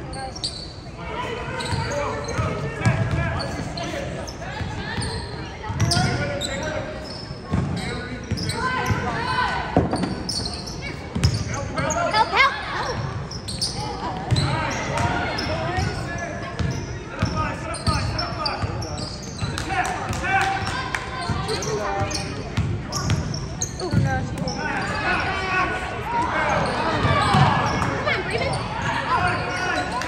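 A basketball bouncing repeatedly on a hardwood gym floor during play, short low thuds, with voices of players and spectators echoing in the large gym.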